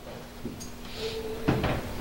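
Two knocks over quiet room tone: a faint one about half a second in and a sharper, louder one about a second and a half in.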